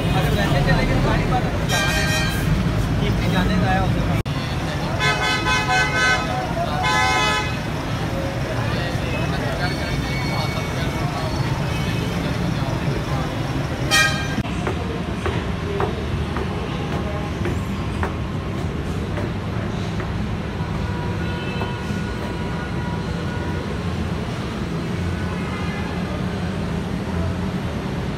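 Vehicle horns honking: a toot about 2 seconds in, several more between about 5 and 7.5 seconds, and one short sharp beep at about 14 seconds, over a steady low rumble of bus engines and traffic.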